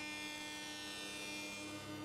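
A steady, quiet machine hum with a thin high whine above it, even throughout.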